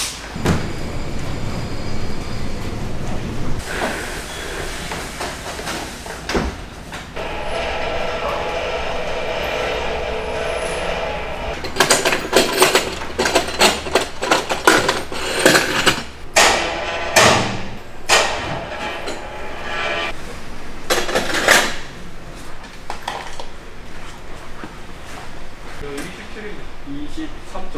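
Metal clanks and knocks from tools and mounting brackets as a rooftop tent is fitted to a car's roof rack, with a steady mechanical whir for about four seconds before the clanking starts.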